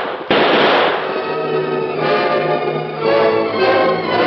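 Two loud, sharp bursts of noise in the first second. Then a string-led orchestral music bridge swells in and plays on, the kind of recorded scene-change music used in 1940s radio drama.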